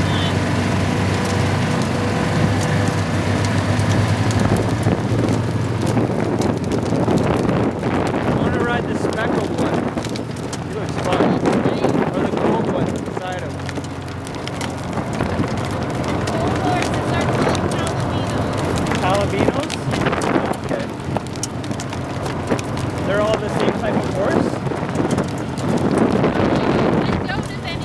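Utility vehicle's engine running steadily as it drives along a gravel road, with tyre and wind noise on the microphone.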